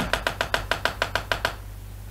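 Heavy, fast knocking on a door: a rapid run of hard knocks that stops about one and a half seconds in.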